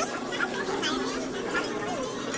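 Indistinct chatter of voices in a busy restaurant dining room, with no clear words.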